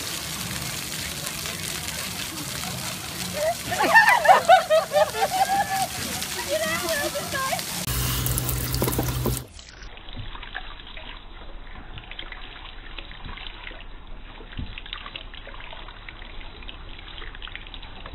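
Steady hiss of running water with a voice calling out a few seconds in. After a sudden cut about halfway, a handheld shower head runs a gentle, steady stream of water over a baby in a bath seat.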